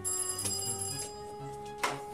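An electric doorbell rings once, its bright ringing tones starting suddenly and fading after about a second, over background music. A sharp click comes near the end.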